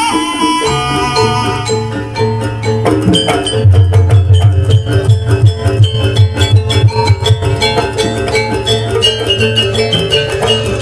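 Javanese gamelan playing jaranan dance music at a fast, steady beat: drums with repeated pitched metal strikes and jingling percussion on top. The low drumming gets louder from about a third of the way in and eases off again past the middle.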